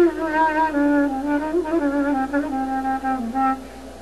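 Clarinet playing a slow, ornamented folk phrase that works its way down in pitch, sliding between notes and turning around them.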